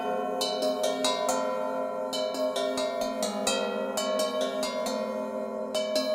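Paiste gongs struck with Balter mallets, played as music: a quick, uneven run of strikes, each one ringing on over a bed of overlapping sustained tones.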